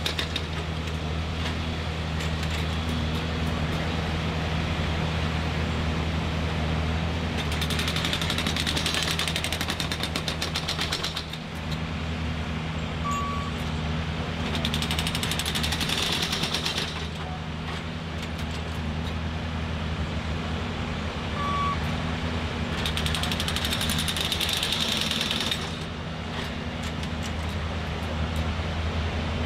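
Nordco production spiker gauger's engine running steadily, with three bouts of rapid hammering a few seconds each as its spike driver drives spikes into the ties. Two short high beeps come between the bouts.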